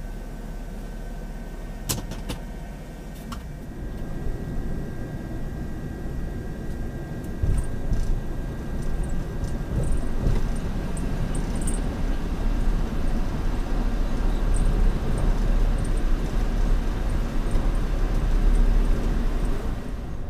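Car cabin noise picked up by a dashcam: low engine and tyre rumble as the vehicle drives slowly, growing louder a few seconds in. A sharp click sounds about two seconds in.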